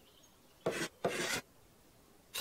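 Two short rasping, rubbing noises in quick succession, the second a little longer, as Upsy Daisy rummages about in her bed.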